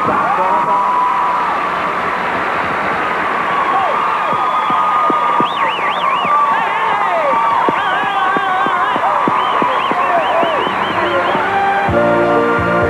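Studio audience applauding and screaming, with many high shrieks and whoops rising and falling over steady clapping.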